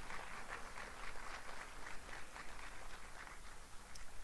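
Audience applauding faintly, a thin patter of many hand claps that fades toward the end.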